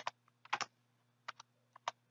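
Computer keyboard typing: a handful of separate, irregularly spaced keystrokes.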